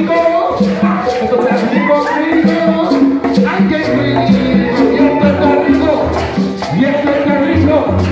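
Live salsa band playing an instrumental passage: a steady percussion beat over a bass line and keyboard.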